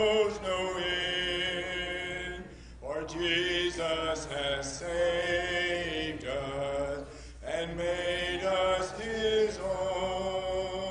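A congregation singing a hymn unaccompanied, in a cappella church style: long held notes in phrases, with short breaks for breath about three seconds in and again past seven seconds.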